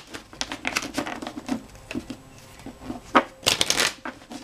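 Tarot deck being shuffled by hand: a run of quick, short card strokes, then a louder half-second flurry near the end.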